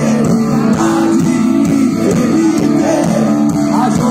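Live rock band playing loud over a concert sound system, with electric guitars to the fore and no singing in this stretch.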